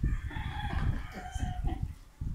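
A single long pitched call held for about a second and a half, with low knocks and rustling underneath.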